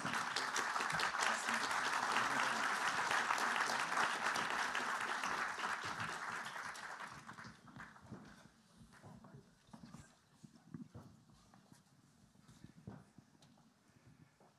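Audience applauding, dying away about seven to eight seconds in, followed by a few faint scattered knocks and shuffles.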